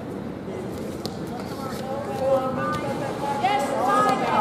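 Indistinct voices of onlookers calling out over a steady background murmur in a reverberant gym, growing louder near the end.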